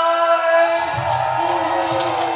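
Amateur singers on microphones holding a long sung note of a Vietnamese pop song over a backing track; about a second in the note gives way to the accompaniment, its lower notes stepping down.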